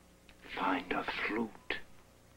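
A man's voice saying a short phrase about half a second in, then one more brief syllable near the end.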